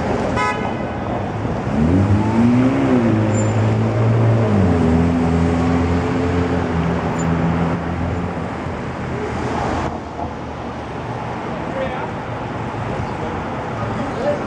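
Motor traffic passing through a city intersection. Over it, a low pitched tone swoops up and down about two seconds in, then holds steady for a few seconds before fading.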